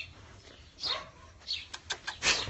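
A dog barking in short bursts, twice in quick succession from about a second in, with a few sharp clicks near the end.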